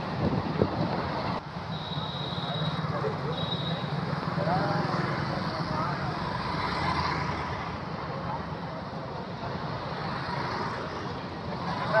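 Street traffic on a busy road: motorcycle engines and road noise running steadily, with voices in the background and two short high-pitched tones about two seconds in.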